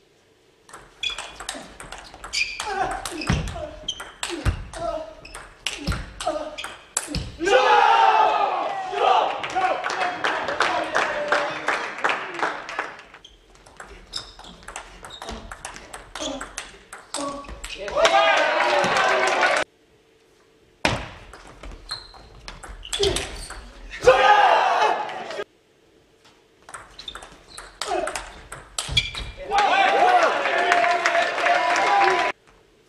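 Table tennis rallies: the celluloid-type ball clicking sharply off the players' bats and bouncing on the table in quick back-and-forth strings, several rallies in a row with short pauses between points.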